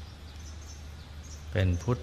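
Steady background noise of an old recording with a low hum and a few faint high chirps, during a pause in a man's slow meditation instruction; his voice resumes about one and a half seconds in.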